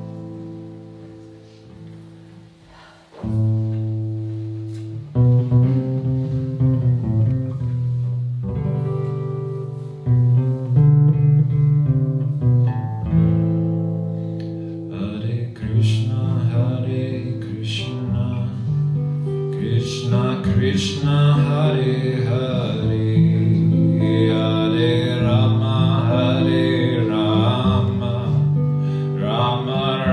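Acoustic guitar opening a kirtan with slow struck chords and picked notes; a singing voice comes in during the second half and carries on over the guitar.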